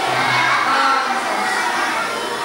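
A roomful of young children shouting and chattering over one another.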